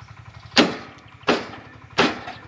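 Kubota compact tractor's diesel engine idling with a steady low chug. Sharp knocks cut in over it, roughly one every three-quarters of a second, and they are the loudest sound.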